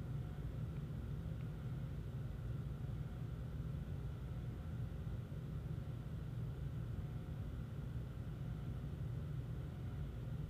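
Steady low hum with a faint hiss of room noise, unchanging throughout, with no distinct event.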